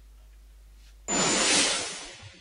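Low room tone with a steady hum, then about a second in a sudden loud whoosh transition sound effect that fades away.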